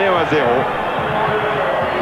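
A man's voice finishes a sentence, then steady crowd noise from a stadium continues under the broadcast.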